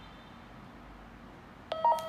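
Retevis RT3S handheld radio giving a short beep of several tones near the end. It marks the long press on the red back key switching the radio from memory (channel) mode to VFO frequency mode.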